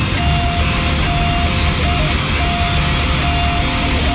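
Loud, heavy rock with distorted electric guitars: a dense low end under a short high melody line that repeats about every second and a half.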